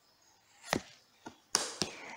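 A tarot card pulled from the deck and laid on the cloth-covered table. A sharp tap about three quarters of a second in and a fainter one a little later, then a short rustle with a click near the end.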